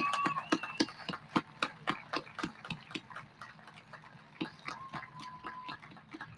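A crowd applauding with scattered hand claps, thinning out and dying away over the seconds.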